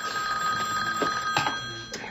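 A telephone ringing with a steady ring that stops shortly before the end, as the call is answered.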